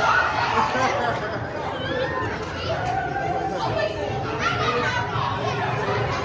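A group of girls and young women talking over one another in lively chatter.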